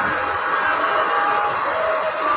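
A steady background din of distant, indistinct voices with faint music.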